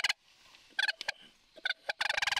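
Sandhill cranes calling: short, pulsing bursts of calls, one at the start and several brief ones in the second second.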